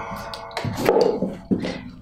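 The fading ring of a struck handheld metal percussion instrument, dying away over the first half second. Then a few short knocks and scuffs and a brief vocal sound near the middle.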